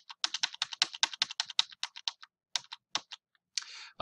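Typing on a computer keyboard: a quick run of keystrokes for about two seconds, a short pause, then a few more keystrokes.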